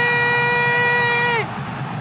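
A football commentator's long goal shout, held on one steady high note. It drops away about one and a half seconds in, leaving only background noise.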